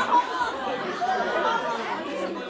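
Several people talking over one another, a confused murmur of chatter with no single clear voice.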